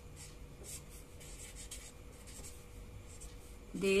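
Marker pen writing on paper: a series of short, faint strokes.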